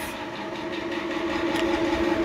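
A steady mechanical drone, a single held tone with overtones, growing slowly louder.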